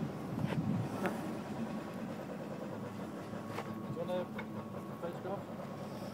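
Low, steady outdoor background noise, a little louder in the first second, with a brief faint voice about four seconds in.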